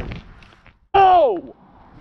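A loud human cry that falls steeply in pitch, about a second in, after a brief drop to silence. It is the dismayed outcry of an angler whose hooked fish has just snapped the line.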